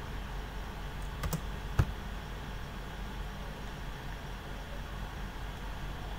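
Computer mouse clicks: a close pair a little over a second in and a single click shortly after, over a steady low room hum.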